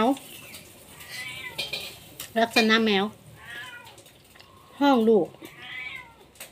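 Domestic cat meowing a few times in loud, falling calls: a mother cat calling for her kittens.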